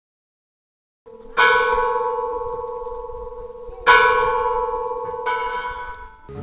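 A bell struck three times, about a second and a half to two and a half seconds apart. Each stroke rings on and slowly fades.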